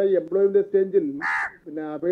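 A single crow caw, short and harsh, a little over a second in, over a man speaking.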